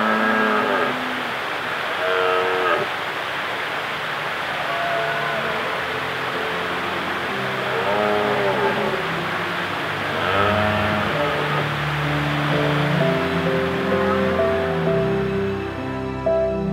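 Red deer stags roaring in the rut from across a glen: about five long roars, each rising and falling in pitch, two to three seconds apart. Soft background music comes in over the last few seconds.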